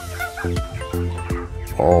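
Background music: an instrumental track with notes struck about every half second over a steady low bass.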